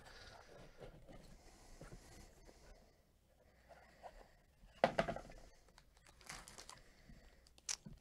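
Faint rustling and crinkling as a small cardboard coin box is opened by hand and a graded coin slab in a clear plastic sleeve is lifted out, with a few soft clicks.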